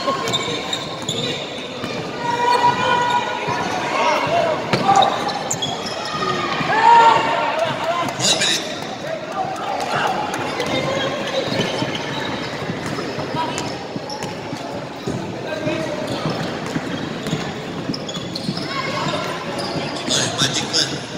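A basketball being dribbled on a wooden gym floor, its bounces ringing in a large hall, with shouts from players and people on the sidelines.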